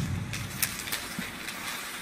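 Ice hockey rink sounds with no crowd: a steady hiss with a handful of sharp clicks and knocks from sticks and skates on the ice.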